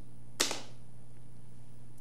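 A pause in speech filled by the steady low electrical hum of the studio sound track, with one short sharp click about half a second in.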